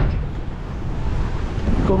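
Wind buffeting the microphone, a steady low rumble, with choppy sea around the jetty beneath it. A man's voice starts near the end.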